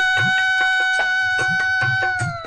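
Tamil film song: one long high note held steady over a regular drum beat, its pitch starting to slide down at the very end.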